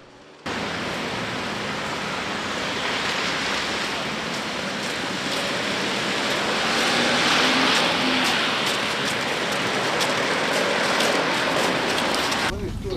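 Steady road and engine noise of a city bus in motion, heard from inside the bus, swelling slightly in the middle.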